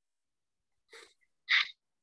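A person's short breathy sounds: two quick bursts about half a second apart, the second louder and hissier.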